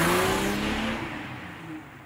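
A car engine sound effect, revving and accelerating away, its pitch rising as it fades out.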